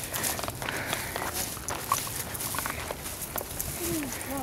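Footsteps of several hikers on a rocky dirt trail: irregular crunches and scuffs of shoes on dirt, stones and dry leaves.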